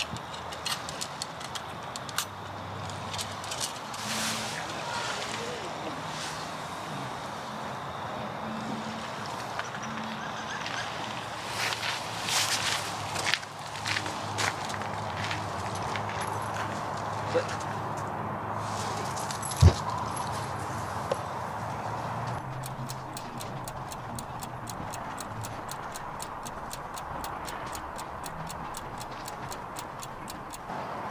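Footsteps crunching and scuffing on beach gravel against a steady outdoor hiss, with low voices. There is a sharp knock about twenty seconds in, and a fast run of even ticks toward the end.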